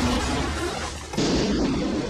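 Film soundtrack: a deep steady rumble, then about a second in a sudden loud crash-like noise that lasts nearly a second.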